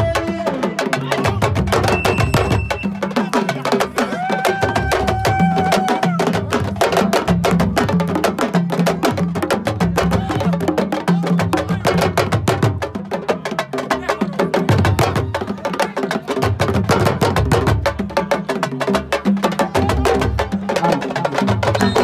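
Fast, dense hand drumming on sabar drums, with voices calling over it and a few held sung notes early on.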